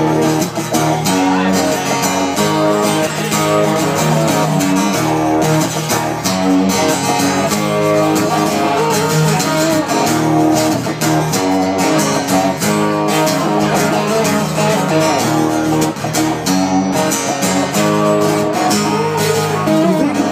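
Guitar playing an instrumental break in a country song, sustained chords with picked notes over them.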